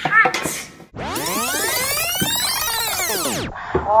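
A girl's short high-pitched cry. It is followed by an edited transition sound effect of many tones sweeping up and then back down, lasting about two and a half seconds. The cry then comes again as a replay near the end.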